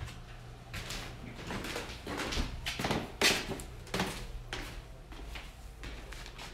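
Irregular knocks and rustles of someone moving about and handling things, a few a second, the loudest a little after halfway, over a low steady hum.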